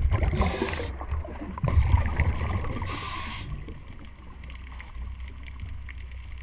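A diver breathing underwater through a regulator, heard on the camera's microphone: two short inhalation hisses, and low rumbling bursts of exhaled bubbles between them.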